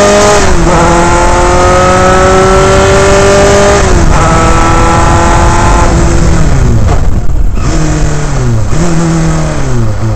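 Dallara Formula 3 car's Alfa Romeo four-cylinder engine at full throttle, heard onboard. The pitch climbs through the gears, with upshifts about half a second and four seconds in. From about six seconds the car brakes hard for a hairpin: the engine note falls in steps through the downshifts, with a throttle blip near the end.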